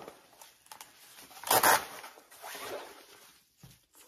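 A nylon garment folder being unfolded: fabric rustling, with a short tearing rasp about one and a half seconds in as a Velcro-closed flap is pulled open, then a softer swish of fabric.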